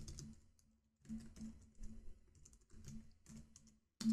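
Computer keyboard typing, faint, in quick runs of keystrokes with a short pause in the first second.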